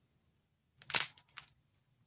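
Plastic craft-kit packaging being handled: a short cluster of sharp crinkling clicks about a second in.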